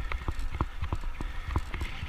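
Bicycle ridden over a tarmac path, picked up by a bike-mounted camera: irregular sharp clicks and rattles several times a second over a low wind rumble on the microphone.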